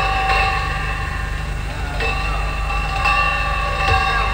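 A jazz big band sounding long held chords that shift every second or two, over a steady low hum.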